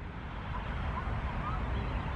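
Steady outdoor background noise in a pause between speech: a low rumble with a soft hiss, and a few faint, short high chirps.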